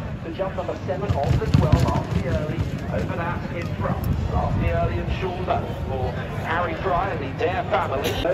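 A field of racehorses galloping past on turf, their hoofbeats heaviest in the first half, under steady untranscribed voices.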